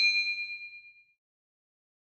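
A bell 'ding' sound effect for a notification bell, its ringing tone fading out about a second in.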